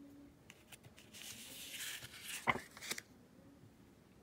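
A paper flashcard being swapped on a wooden table: a few light clicks, then card sliding and rustling against the wood for about two seconds, with one sharp tap about two and a half seconds in as the next card is set down.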